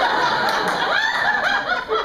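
Audience laughing loudly: many voices chuckling and laughing together throughout.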